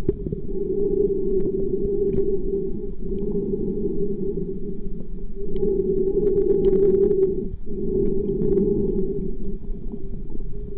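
Muffled underwater sound picked up by a submerged waterproof camera: a steady, dull low rumble of water moving around the camera, with faint scattered ticks and a brief dip about three quarters of the way through.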